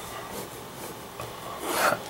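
Ballpoint pen scratching softly on notebook paper, writing a short line and drawing a box around it.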